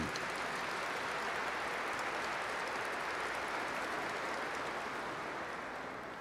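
A large congregation applauding, a steady round of clapping that fades away near the end.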